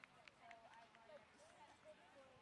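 Near silence on an open field: faint, distant voices calling, with a few soft ticks.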